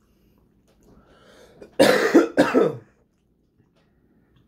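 A man coughing twice in quick succession, two loud, harsh coughs about half a second apart, a little under two seconds in.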